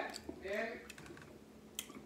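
Small clicks and cracks of boiled crawfish shells being handled and broken apart by hand, with a sharp crack near the end. A short wordless vocal sound comes about half a second in.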